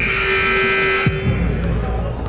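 Gym scoreboard horn sounding one loud, steady, reedy blast of about a second that stops suddenly, signalling the end of a break in play.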